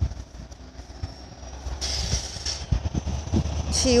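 A road vehicle's rumble and tyre hiss, building up from about two seconds in as it draws near, with soft footsteps on grass before it.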